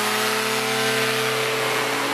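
A powered parachute's two-stroke engine and propeller running at full takeoff power as the cart rolls across the field and lifts off, making a steady buzz.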